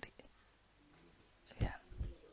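A pause in a man's speech at a microphone: quiet room tone, broken about one and a half seconds in by one short, breathy sound from the speaker.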